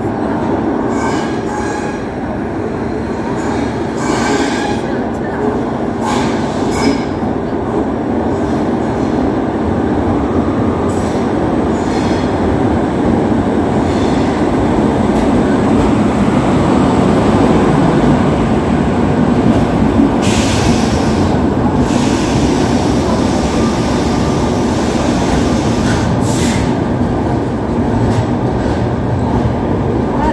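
Shatabdi Express train arriving along a station platform behind an electric locomotive: a steady rumble of wheels on rail that grows louder as the locomotive and coaches roll past. Brief high-pitched bursts come over it about two-thirds of the way through and again near the end.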